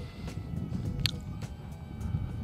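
Soft background music over a low, uneven rumble of wind on the microphone, with a brief high chirp about a second in.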